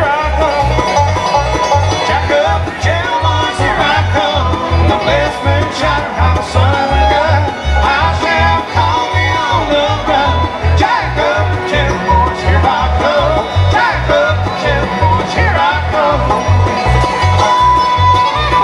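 A bluegrass band plays live: five-string banjo, fiddle, acoustic guitar and mandolin over a steady, evenly pulsing bass beat.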